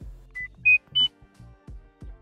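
Short electronic transition jingle: three quick beeps stepping up in pitch, about a third of a second apart, over a low pulsing bass beat.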